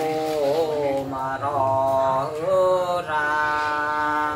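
Unaccompanied voice singing a Mường folk song (hát Mường), holding long notes that waver and slide in pitch, with short breaks between phrases.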